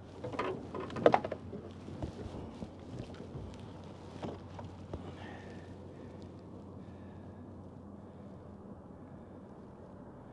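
Handling noises as a crappie is weighed on a hand scale in an aluminium boat: a cluster of knocks and clicks in the first second or two, the loudest about a second in, a few scattered ticks after, then a steady low background of light wind.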